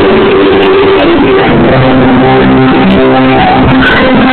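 A live band playing loudly, keyboards and guitar holding sustained chords and notes.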